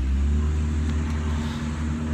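A steady low drone from a running motor nearby: an even hum that does not change.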